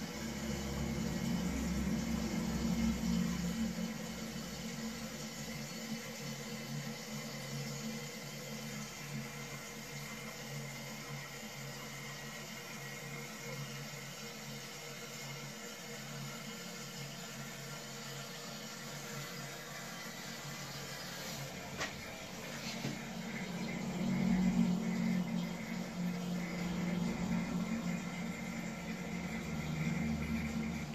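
Low-level Neon plastic toilet cistern refilling: a steady hiss of water running in through the fill valve, swelling slightly near the end.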